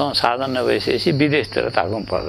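A man talking, with a steady high-pitched insect drone, like crickets, behind him.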